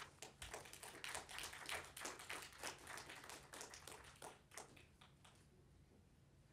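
Light applause from a small audience, individual claps heard separately, thinning out and stopping about five seconds in.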